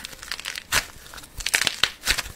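Blue kinetic sand being squeezed and torn apart between fingers, making a run of soft, crumbly crackles. The sharpest crackles come in the second half.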